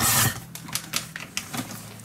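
Paper trimmer cutting a sheet of cardstock: a loud swish at the start, then a quick run of small clicks for about a second and a half.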